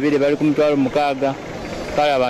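Speech: a man talking into a news reporter's microphone.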